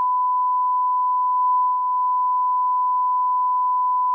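Censor bleep: one pure, steady, high-pitched tone held unbroken, laid over the soundtrack so that the spoken words are blanked out entirely.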